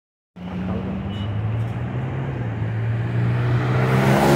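Car engines at a road junction: a steady low engine hum over road noise, slowly growing louder toward the end as a car drives past close by.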